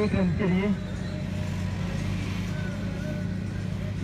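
A man's voice trails off in the first second, then a steady low hum continues under the open-air background.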